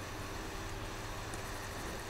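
Steady low background hiss with a faint hum: room tone picked up by the narration microphone, with no distinct events.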